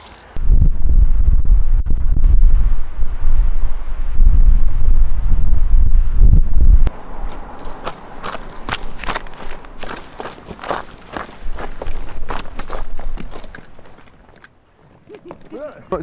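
Wind buffeting the microphone as a loud low rumble for about the first seven seconds, cutting off abruptly. Then a quieter run of short rustles and crunches that thins out near the end.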